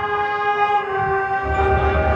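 A marching band holding a long, loud sustained chord on its brass and wind instruments. About one and a half seconds in, the chord shifts and a rapid low pulsing comes in underneath.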